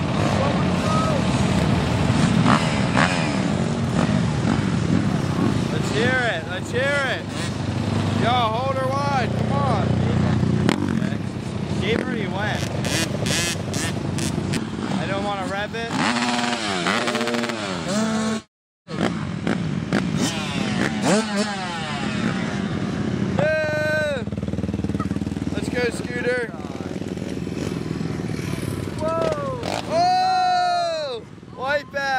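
Several dirt bikes and quads running on a dirt track, their engines revving up and down over one another as they ride past. The sound cuts out to silence for a moment a little past the middle.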